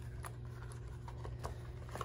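Faint handling sounds: a few light ticks and rustles as plastic sports sunglasses, a cloth drawstring pouch and a lens wipe are handled, over a low steady hum.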